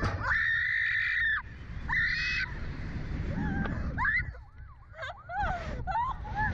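A rider's high-pitched screams on the Slingshot reverse-bungee ride at launch: two long screams in the first couple of seconds, then shorter shrieks near the end, over wind rumbling on the microphone.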